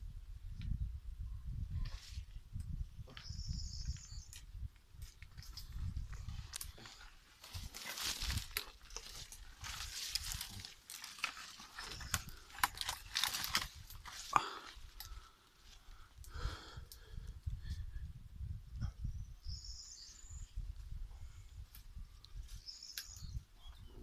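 Low, uneven wind rumble on the microphone, with heavier rustling of leaves and branches about 8 to 14 seconds in as someone climbs a wooden ladder up into the tree. Short high chirps come twice, a few seconds in and again near the end.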